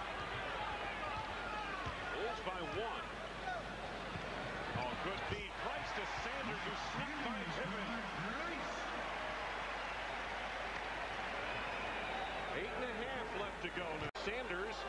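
Basketball arena game sound: many crowd and player voices mixed together, with a ball bouncing on the hardwood court during live play.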